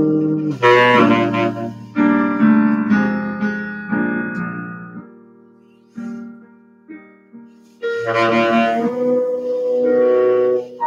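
Saxophone and piano playing jazz together: a run of struck piano chords that ring and fade, a quieter stretch with a few isolated notes about halfway through, then louder playing again near the end.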